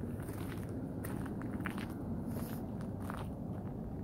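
Footsteps on gravelly dirt ground: a run of uneven steps.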